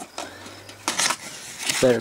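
A small cardboard box being handled and its flaps pulled open: a few short scrapes and rustles of cardboard, about a second apart.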